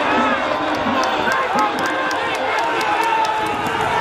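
Crowd of racetrack spectators shouting and cheering over one another, with a quick run of sharp ticks through most of it.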